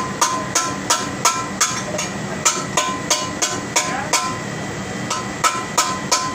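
Hammer striking metal in quick runs of about three blows a second with short pauses, each blow ringing briefly, during repair work on a laundry pressing machine. A steady machinery hum runs underneath.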